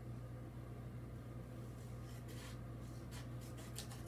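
Scissors cutting a small paper hang tag: a few quiet snips and paper rustles in the second half, over a steady low electrical hum.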